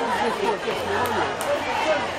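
Chatter of a large crowd: many voices talking at once, overlapping, with no single voice standing out.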